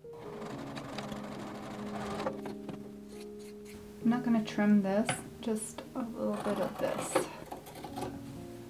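Juki sewing machine running steadily as it stitches a seam, stopping about four seconds in. Background music plays throughout, with a voice prominent in the second half.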